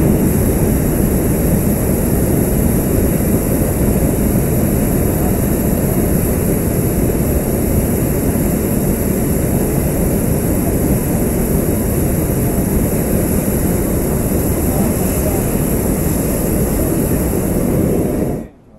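Hot-air balloon's propane burner firing in one long, steady blast, a loud even rushing roar that cuts off suddenly at the very end. The burn heats the air in the envelope.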